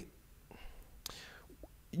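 Faint breathing in a pause in a man's speech, with one small mouth click about a second in.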